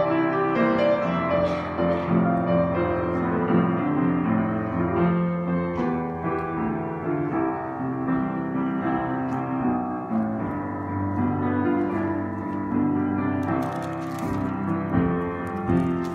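Upright piano playing the offertory: a continuous stream of held chords under a melody, at an even level.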